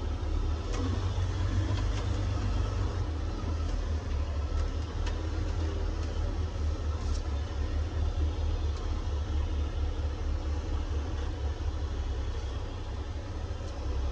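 Log truck's diesel engine running with a steady low rumble, heard from inside the cab.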